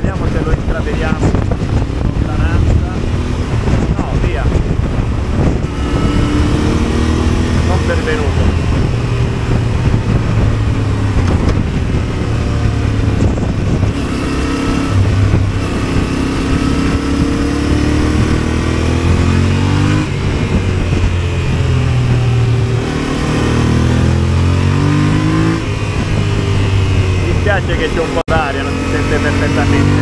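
Yamaha motorcycle engine running under way, its note rising and falling with the throttle and gear changes over a steady rush of wind and road noise, climbing as it accelerates near the end.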